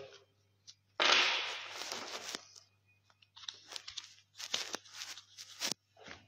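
Playing cards handled on a table: a loud swishing rasp of cards about a second in that fades out, then a quick run of light snaps and taps as cards are put down one after another.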